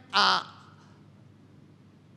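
A man's single short, loud shouted syllable through a microphone just after the start, followed by a pause of low room tone.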